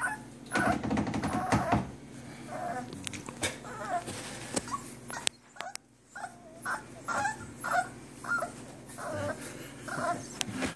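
Five-week-old puppies whimpering and yipping: many short, high, wavering calls one after another, with scattered clicks and knocks and a louder scuffle in the first couple of seconds.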